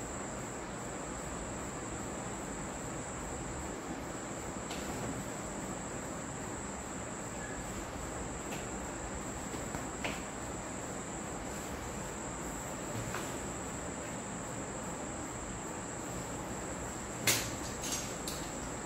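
A steady high-pitched whine over constant background hiss, with a few faint taps and one louder knock near the end.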